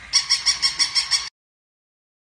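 Battery-operated toy chihuahua yapping, a rapid run of high electronic yips about six a second that cuts off suddenly after about a second.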